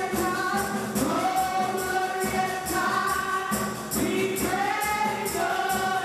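A small gospel choir of women singing live through microphones, with hand clapping keeping a steady beat.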